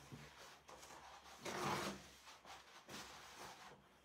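Faint handling noises of craft materials being moved and rubbed, with one louder soft rustle about a second and a half in.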